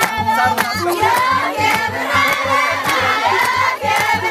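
Many voices singing together over a steady, fast drum beat.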